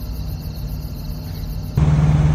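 Kenworth semi truck's diesel engine idling: a low, steady rumble that gets louder with a steady hum near the end.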